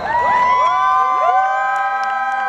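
A crowd of football fans shouting together in one long drawn-out yell, many voices sliding up into it at the start and then holding their notes.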